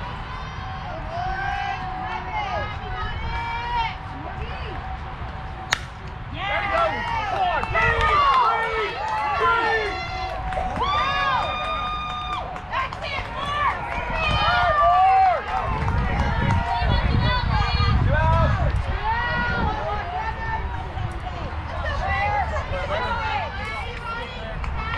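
A softball bat hitting the ball with one sharp crack about six seconds in, then players and spectators shouting and cheering for several seconds. A low rumble runs under the voices later on.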